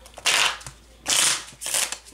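A deck of tarot cards being shuffled by hand, in two quick bursts of cards sliding and slapping against each other.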